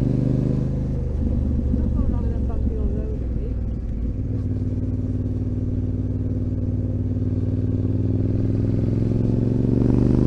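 Yamaha Ténéré 700's parallel-twin engine running at low road speed on a steep downhill, its pitch rising near the end as the bike picks up speed.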